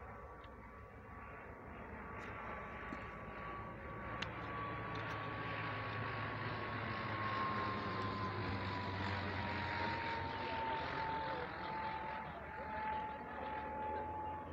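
Propeller-driven light aircraft flying overhead. The engine and propeller drone swells to its loudest around the middle, and its steady whine slides down in pitch as the plane passes.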